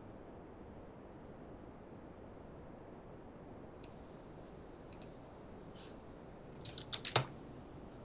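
Computer mouse and keyboard clicks over a faint hiss: a few single clicks spaced out, then a quick run of clicks about seven seconds in.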